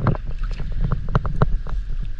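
An otter in shallow creek water: sharp, irregular clicks and splashes, several a second, over a low rumble of wind on the microphone.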